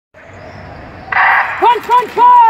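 Starting gun for a short-track speed skating race: a sudden short burst about a second in. Two short shouts from spectators follow.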